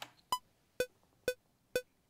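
DAW metronome count-in: four short electronic clicks about half a second apart, the first higher-pitched than the other three, counting one bar in before recording starts.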